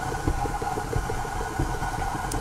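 Electric tilt-head stand mixer running, its motor humming steadily with a fast rhythmic flutter as it beats a stiff molasses dough while flour is poured in.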